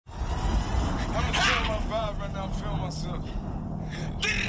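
A voice making short vocal sounds over a steady low rumble.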